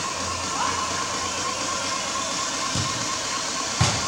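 Steady noisy ambience of an indoor soccer game in a sports dome, heard through a camcorder microphone, with a faint steady whine underneath. A sharp knock near the end is the loudest moment.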